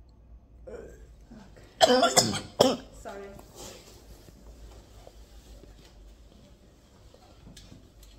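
A woman coughs several times in quick succession about two seconds in, loud and sharp, a reflex brought on by a flexible endoscope passed through her nose into her throat.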